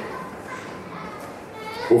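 Faint children's voices in the background of a large hall during a pause in the talk, with a man's voice starting loudly right at the end.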